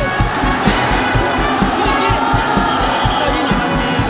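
Large arena crowd cheering and shouting as a ssireum fall is decided, over background music with a steady beat.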